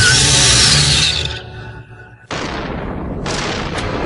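Cartoon sound effects over dramatic music: a loud rushing noise fades away about a second and a half in, then after a brief lull a sudden loud burst of noise cuts in and swells again near the end with crackling, as for an energy blast with lightning.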